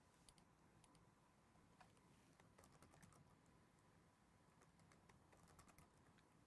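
Very faint computer keyboard typing: scattered keystrokes, with quick runs of clicks in the middle and near the end.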